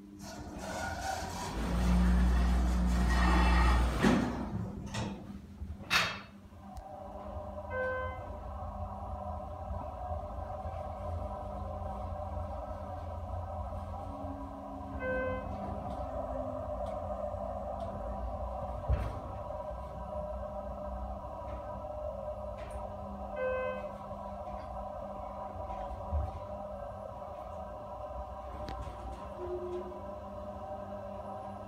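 Schindler 330A hydraulic elevator in service: a loud rumble and the doors working for the first few seconds, a click, then a steady hum from the drive as the car travels. Three short electronic chimes sound about seven seconds apart.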